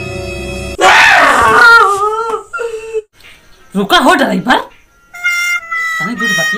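Background music stops abruptly, and a man's loud, wailing cry breaks in, falling in pitch over about two seconds. A shorter second cry follows, and steady music tones return near the end.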